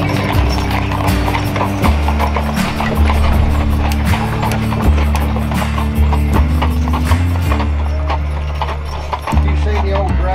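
Hooves of a team of draft mules clip-clopping on a paved road as they pull a wagon, a quick uneven patter of strikes. Music with a steady bass line plays over them.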